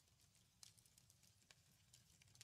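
Faint handling of tarot cards by hand: a few soft clicks and rustles as a card is held and lifted, over a very quiet background.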